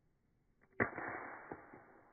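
An iPhone 5s hitting a brick-paved driveway after being thrown into the air. There is one sharp impact a little under a second in, then a quick second hit and a lighter clatter as it bounces and settles. It lands on a corner, which shatters the glass and destroys the home button.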